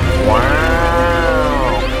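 A voice drawing out one long "wow", rising and then falling in pitch for about a second and a half, over a steady background music drone.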